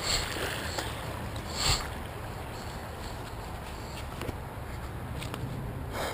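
Footsteps and rustling on a dry dirt and leaf-litter path, heard through a body-worn action camera's microphone with a steady low rumble from wind and handling. A few short scuffs or knocks stand out, the loudest about a second and a half in.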